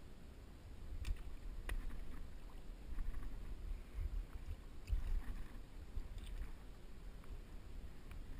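Muffled handling and movement noise picked up by a GoPro in its waterproof housing: low rumbling that swells and fades, with light water sloshing and a few sharp clicks, two of them a little past one second in.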